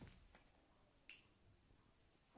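Near silence with two faint short taps, one at the start and one about a second in, from kittens' paws and claws on a rug as they play-fight.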